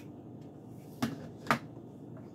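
Two sharp plastic knocks about half a second apart, the second louder: parts of a blender being taken apart and a round plastic piece set down on the counter.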